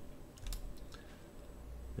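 A few faint clicks of computer keyboard keys.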